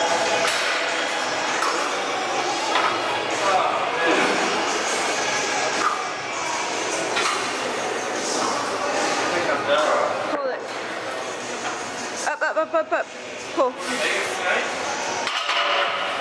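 Busy gym background of indistinct voices and chatter, with occasional metallic clinks of weights.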